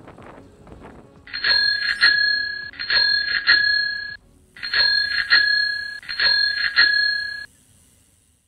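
Bicycle bell rung in four quick double dings (ding-ding), each pair ringing on clearly. There is a short pause after the second pair.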